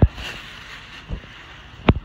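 Thin plastic shopping bags crinkling and rustling as they are handled, with sharp knocks or pops right at the start, a weaker one just after a second, and a loud one near the end.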